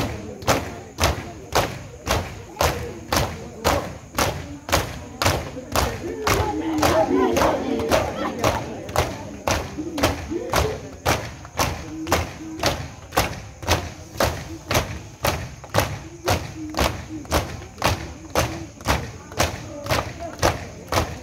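A crowd of Shia mourners doing matam, striking their chests in unison with open hands at a steady two slaps a second. Crowd voices swell in a shout for a few seconds near the middle.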